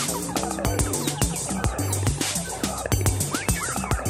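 Live improvised psytrance played on modular synthesizers: a steady electronic kick beat under a pulsing synth bassline, with warbling synth bleeps that swoop up and down in pitch near the end.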